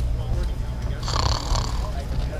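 A snoring sound effect: one drawn-out snore about a second in, over a steady low rumble.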